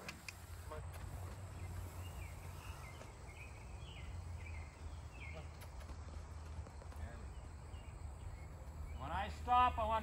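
Soft hoof steps of a Gypsy mare walking on loose arena dirt, faint over a steady low outdoor hum.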